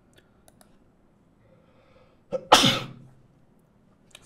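A man sneezes once, loudly and sharply, about two and a half seconds in, with a short intake just before the blast.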